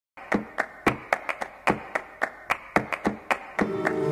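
Flamenco palmas: sharp hand claps beating out a rhythm at about four a second, some louder than others. Near the end a flamenco guitar comes in with a ringing chord.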